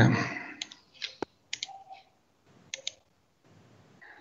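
Several sharp clicks of a computer mouse, spaced irregularly and some in quick pairs like double-clicks.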